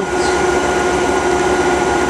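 Nine-coil electrical machine running unloaded, giving a steady electrical hum with a constant pitched whine over it.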